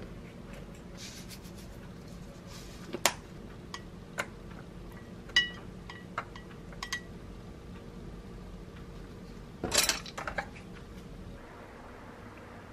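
Wooden chopsticks clicking and tapping on plastic bowls and a plastic food container as food is served: scattered light clinks, with a louder short clatter of several knocks about ten seconds in. A low steady hum runs underneath.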